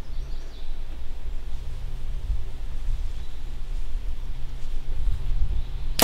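Steady low outdoor rumble with a faint, even low hum underneath, and no distinct event.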